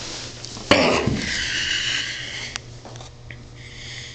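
A sudden bump about a second in, then a loud breath close to the microphone lasting about a second and a half, over a steady low hum.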